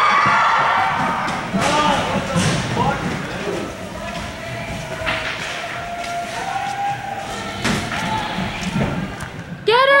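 Broomball players calling out across an ice rink, with scattered thumps and knocks of brooms and the ball on the ice and boards, in the echo of a large arena; a loud shout comes at the very end.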